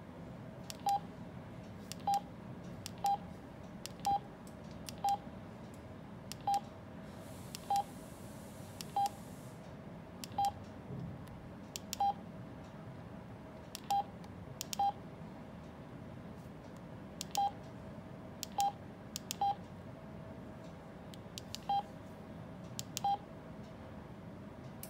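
Alinco DJ-MD5 handheld DMR radio's keypad beeps as its buttons are pressed: about seventeen short single-pitch beeps, each with a light button click, coming roughly once a second at uneven intervals while the menus and frequency are stepped through.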